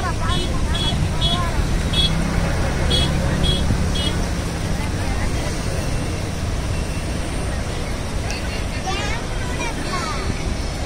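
Steady roar of floodwater rushing out of the open spillway gates of the Tungabhadra Dam and churning down the river, heavy in the low end. A run of short high chirps sounds about twice a second through the first four seconds.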